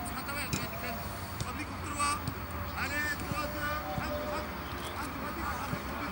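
Voices calling and shouting across a football training pitch, with a few short sharp knocks of balls being kicked.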